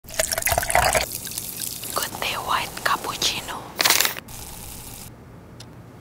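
Coffee poured into a ceramic mug: a loud splashing pour in the first second, then a thinner stream whose tone shifts as the cup fills. A short loud rush of noise comes about four seconds in, and it settles to a faint hiss near the end.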